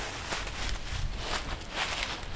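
Footsteps crunching through dry fallen leaves on a woodland floor at a walking pace.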